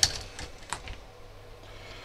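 A few light clicks and taps, three within the first second, from hands handling parts on a workbench, over a low steady hum.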